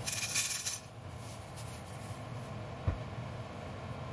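A plastic bag rustles as a handful of small red chillies are tipped out and rattle onto an empty non-stick frying pan in the first second. A single knock comes near three seconds in, over a steady low hum.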